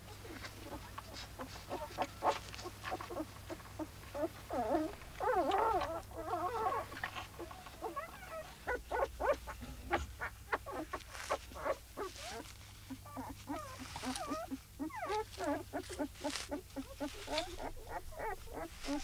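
Newborn wolf pups whimpering and squeaking in bouts, with many short wet clicks as the mother wolf licks them.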